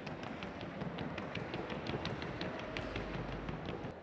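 Quick, even hoofbeats of a Colombian trocha mare on the wooden sounding board (tabla), several sharp clicks a second. They stop just before the end.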